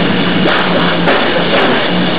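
Live rock band playing loud and without vocals: distorted electric guitars over a drum kit, with cymbal hits cutting through.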